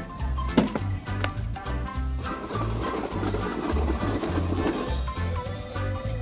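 Upbeat background music with a bouncing, repeating bass line; a rough, grainy noise swells under it through the middle.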